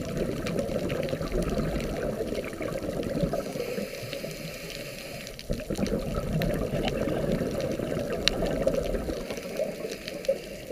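Underwater ambience picked up by a submerged camera: a muffled, steady rushing of water that swells and eases, weaker about halfway through, with faint scattered clicks.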